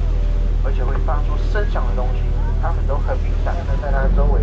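A boat's engine droning steadily under way, with people's voices over it.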